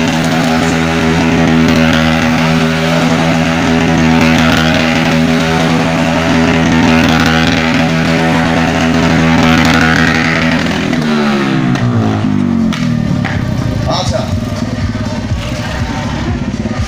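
A stunt motorcycle's engine revved up and held at high, steady revs for about eleven seconds, then the revs drop away to a rough, uneven lower running.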